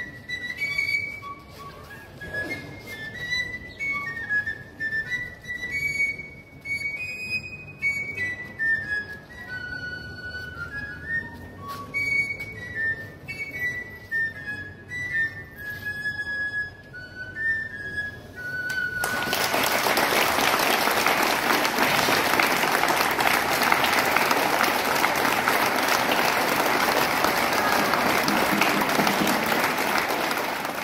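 A txistu, the Basque three-hole pipe, plays a high melody of short notes with taps on the tabor drum the same player carries, ending on a held note about two-thirds of the way in. The crowd then applauds through to the end.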